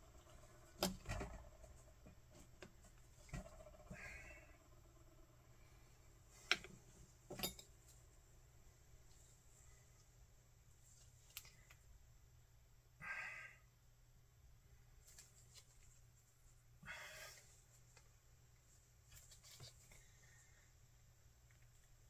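Mostly quiet room tone with a few faint, scattered clicks and short rustles of small metal parts and tools being handled by hand.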